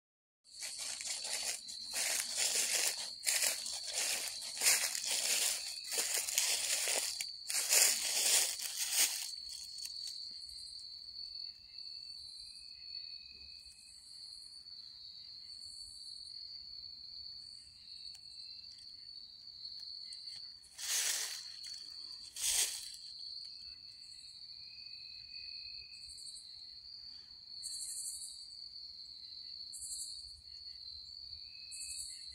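Footsteps crunching through dry fallen leaves for the first nine seconds, with two more crunches of leaves a little past twenty seconds in. Underneath, a steady high-pitched chorus of calling tree frogs, with short higher and lower calls breaking through.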